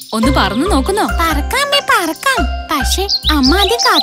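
Children's cartoon soundtrack: bouncy music with repeated deep bass notes and jingling tinkles, under high cartoon character voices that slide up and down in pitch.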